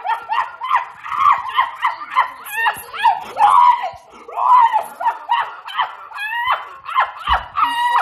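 A person laughing hysterically in high-pitched, squealing bursts, one right after another.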